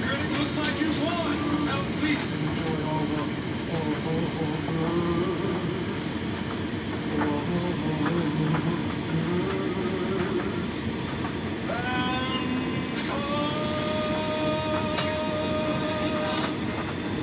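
Hotpoint front-loading washing machine on its spin cycle, the drum running fast with a steady rumble. Voices from a TV play in the background, and a steady whine joins about twelve seconds in.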